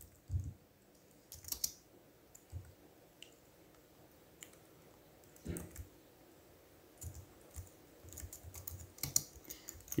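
Computer keyboard typing: quiet, irregular keystrokes in small scattered clusters.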